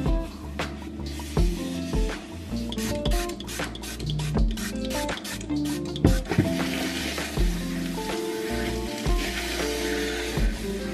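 Background music with a steady bass line, over cleaning sounds on a cabinet shelf: a run of quick spritzes from a trigger spray bottle of disinfectant around the middle, then a paper towel rubbing over the shelf near the end.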